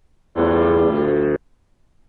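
A chopped sample of 1970s film music triggered from a pad in the Koala Sampler app: a held chord about a second long that changes partway through, then cuts off abruptly when the chop ends.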